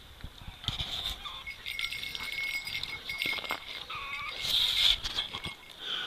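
Dogs making vocal noises as they play, with an Akita puppy among them: a thin high whine through the middle and a short bent yelp about four seconds in, with light scrabbling clicks.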